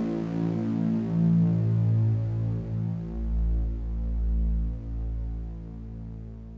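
Electronic music: a deep, droning synthesizer bass with slowly shifting low notes and a throbbing sub-bass that swells about halfway through. It fades down toward the end.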